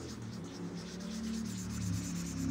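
Felt-tip marker rubbing back and forth on lined paper while colouring in: a soft, rapidly repeated scratching. Faint steady low tones run underneath.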